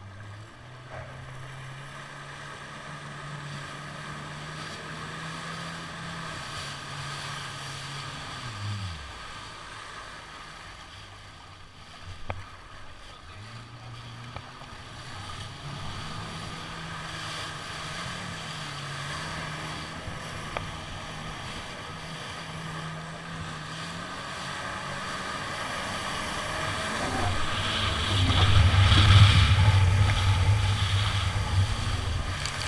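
Jet ski engine running at low speed over water; its note falls away about nine seconds in and picks up again a few seconds later. Near the end it speeds up, and rushing spray and wind grow loud.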